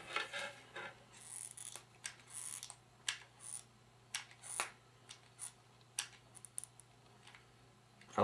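Faint scattered clicks and brief light rubbing from a hot glue gun and a plastic switch plate being handled as hot glue is applied, over a faint steady low hum.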